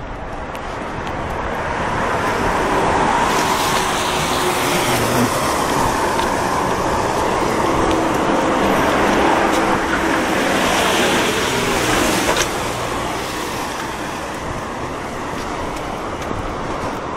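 Road traffic: cars driving past on the road, their tyre and engine noise building over the first few seconds, staying loud, and easing off after about twelve seconds.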